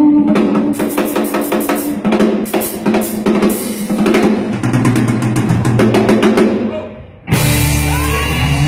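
Live band music carried by a drum kit playing a fast fill of snare rolls and cymbal strokes over held bass notes. It dies down just before the end, then the full band comes back in loudly.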